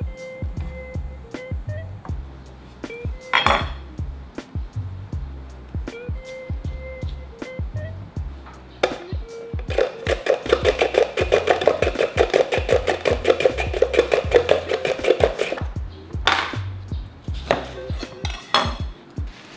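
A radish being sliced on a handheld plastic mandoline slicer: rapid, even strokes for about six seconds starting about ten seconds in, over background music.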